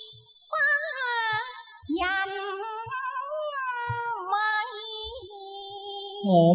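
Cantonese opera music: a high, wavering melodic line with vibrato and sliding notes, over soft low thuds from the accompaniment.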